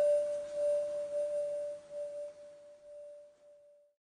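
A single struck metallic bell-like tone, the closing note of the soundtrack, ringing on and slowly fading until it dies away just before the end.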